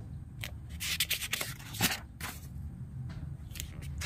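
Paper pages of a printed booklet rustling and sliding under the hand as a page is turned: a series of short, crisp rustles.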